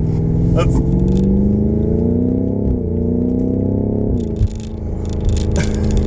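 BMW M5 Competition's twin-turbo 4.4-litre V8 accelerating, heard from inside the cabin: its pitch climbs, drops at an upshift a little under three seconds in, climbs again and drops at a second upshift about four seconds in, then runs steady.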